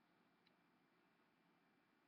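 Near silence: faint room tone, with one faint tick about half a second in.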